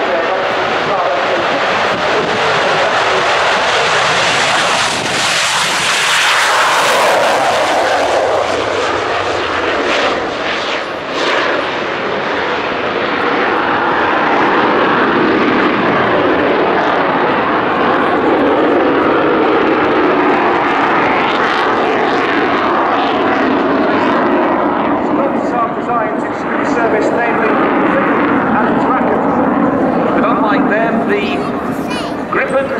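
Saab JAS 39C Gripen's single Volvo RM12 turbofan at full power, taking off and climbing away: a loud, continuous jet rush that is harshest about five to eight seconds in, then settles into a lower, steady sound as the jet flies overhead.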